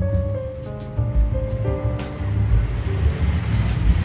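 Background music: a slow melody of held notes stepping up and down in pitch.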